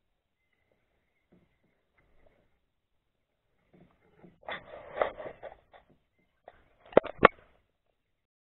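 Handling noise: a stretch of rustling a little past halfway, then two sharp clicks about a quarter-second apart near the end.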